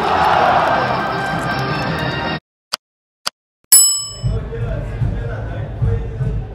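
Stadium ambience that cuts off abruptly. After a moment of silence with two faint clicks, a single loud bell-like ding rings out and fades quickly, followed by low room rumble.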